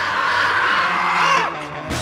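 A female zombie's harsh, wavering shriek, held for about a second and a half and bending down in pitch as it cuts off, over film music.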